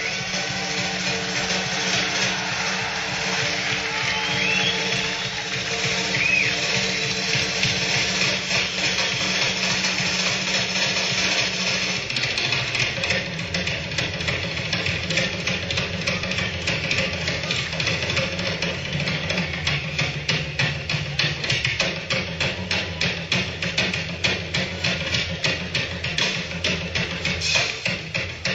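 Live rock band recording: a held low chord over a wash of noise, then from about twelve seconds in a steady beat of sharp taps carries the music.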